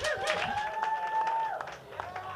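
A small audience clapping at the end of a comedy set, with scattered claps and one voice holding a long cheer in the middle.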